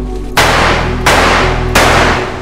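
Three handgun shots at a shooting range, about 0.7 seconds apart, each ringing out briefly, over background music.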